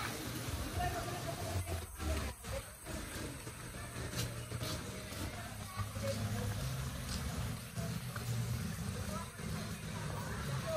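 Faint, indistinct voices over a steady low rumble.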